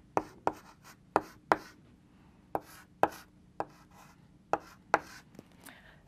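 Chalk writing on a blackboard: a run of about nine sharp, irregularly spaced taps and short strokes as the chalk strikes and moves across the board.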